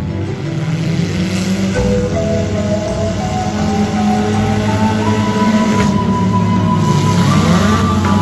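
Music mixed with the engines of figure-8 race cars running, one rising in pitch as it revs up near the end.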